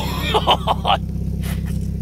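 People laughing in the first second, over a steady low engine hum like that of an idling vehicle.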